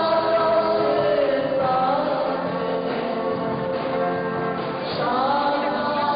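A group of voices singing together in long held notes, the pitch changing about a second and a half in and again about five seconds in.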